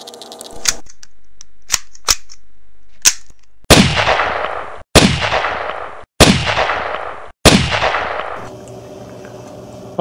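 Gunshot sound effects: four loud shots a little over a second apart, each ringing out in a long fading echo, preceded by a few sharp clicks.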